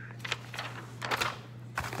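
Large sheet of paper rustling and crackling as it is handled and lowered, in a few short crisp bursts.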